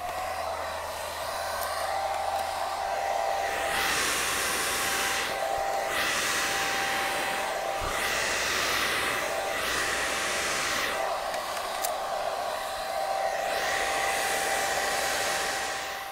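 Revlon hair dryer blowing, a steady rush of air with a motor whine, blowing on a long beard. The airflow swells and eases several times as the dryer is moved about, and the sound starts at the beginning and fades out near the end.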